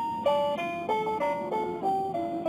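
A battery-powered children's musical toy playing a simple electronic tune through its small speaker, one plucked-sounding note after another.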